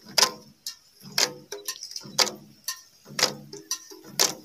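Garo long barrel drums (dama) beaten by hand in a steady dance rhythm: a strong, deep stroke about once a second with lighter strokes in between.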